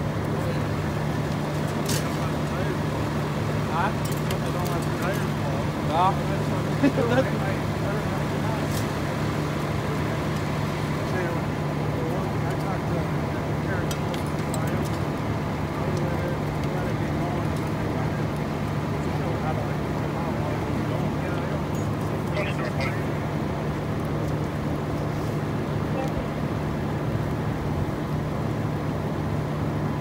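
A school bus fully engulfed in fire, burning with a steady roar and scattered sharp pops and crackles. Underneath runs a constant low engine hum, as from a vehicle idling nearby.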